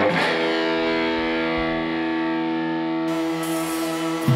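An electric guitar chord struck once and left ringing, held steady for about four seconds.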